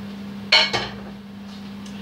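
Metal cookware clanking: two sharp clanks close together about half a second in, as a pan or utensil knocks against a steel pan, over a steady low hum.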